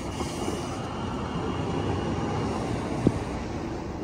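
Class 399 tram-train running past along the track in a steady rumble, with a single sharp knock about three seconds in.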